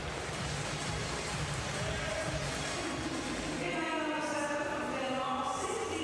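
Steady background noise of a large indoor arena, with music coming in over it about halfway through.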